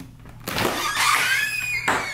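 House door into a garage being pulled open: a long hinge squeal with a wavering, gliding pitch, ending in a sharp knock near the end.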